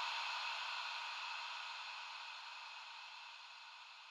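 A pitchless hiss, fading slowly and evenly. It is the decaying tail left after the music ends.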